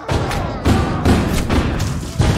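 Gunfire: about six loud shots in quick succession, roughly three a second.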